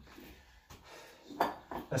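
Weighted dip belt being fastened around the waist with 30 kg of plates hanging from it: faint rustling and a few light clicks, followed by a short voice sound near the end.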